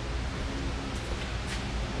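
Steady low background noise of a workshop, with a faint voice for a moment early on.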